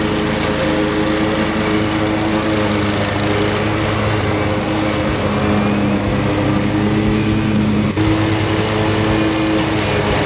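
Wright ZK stand-on commercial mower running with its blades engaged, cutting through tall, thick grass: a steady engine and blade drone.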